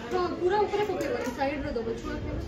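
Indistinct chatter: voices talking in the background.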